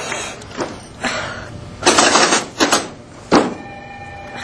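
A snack vending machine being worked by hand: a few sharp, irregular knocks and clatters against the machine.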